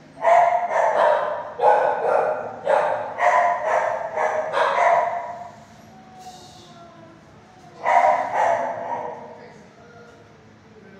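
Dog barking off camera in a shelter kennel: a run of barks about two a second for some five seconds, a pause, then a few more near the end.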